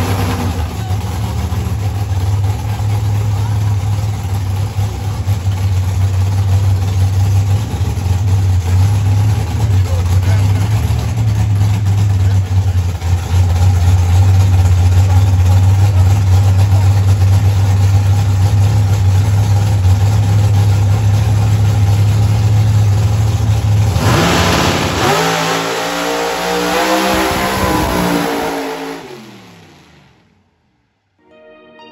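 Drag car's engine held at a loud, steady low drone on the starting line, then about 24 seconds in it launches at full throttle, the pitch climbing as it pulls away before the sound fades out near the end.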